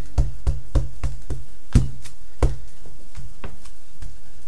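Wooden-backed rubber stamp tapped on an ink pad and pressed down on a padded car sunshade: about a dozen light knocks, quickest in the first second and a half, the loudest a little under two seconds in.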